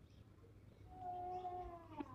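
A single drawn-out animal call beginning about halfway through, holding one pitch for about a second and then sliding down in pitch as it fades.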